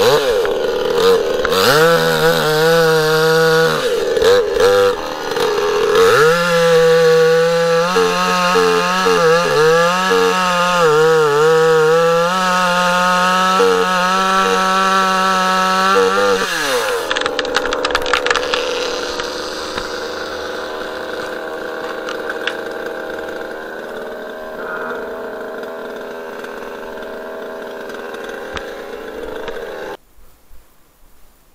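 Demon CS 58T 55 cc two-stroke chainsaw, still being run in, cutting at full throttle into a fresh alder trunk, its pitch wavering and sagging as the chain bites. About halfway through the revs drop and it settles into a steady idle.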